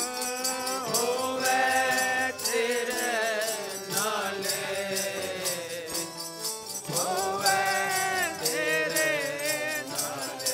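Gurbani keertan: a man's voice singing a shabad over a sustained harmonium, with tabla/jori drums and an even, jingling metallic beat.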